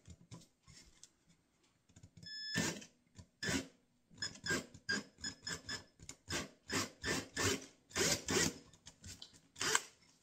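Cordless drill boring a shallow hole into the wooden rim of a box, its motor whining in short trigger pulses, about two a second, starting about two seconds in.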